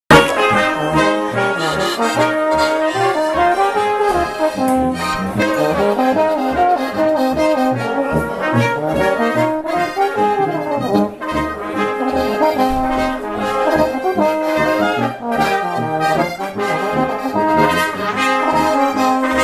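Alpine folk band playing an instrumental passage: brass, clarinet and diatonic button accordion carry the melody over a steady oom-pah beat from a tuba.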